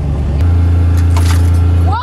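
Side-by-side utility vehicle's engine running under way, a steady low drone that steps up louder about half a second in as it picks up speed.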